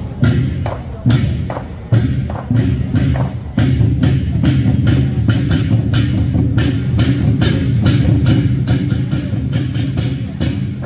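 A centipede drum troupe, a long row of drums on carts towed in a line, beaten together. Heavy beats come at spaced intervals for the first few seconds, then swell into a dense, continuous drumming roll from about three and a half seconds in.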